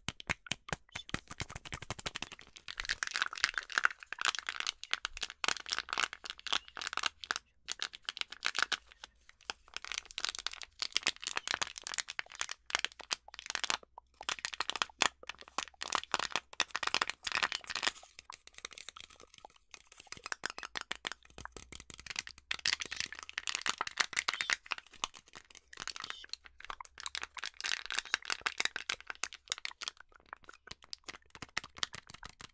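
Adhesive tape handled and peeled close to the microphone: rapid, irregular sticky crackling, in louder stretches with short lulls.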